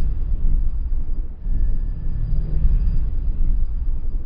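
Onboard sound of a racing kart under way: a steady low rumble of the kart's engine and wind buffeting the camera mic, with a faint thin high whine above it and a brief dip about a second and a half in.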